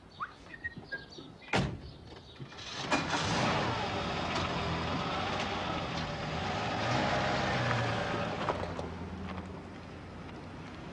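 A car door shuts with a loud slam after a few light clicks, then about three seconds in the taxi's engine starts and runs as the car pulls away, its note swelling and then fading near the end.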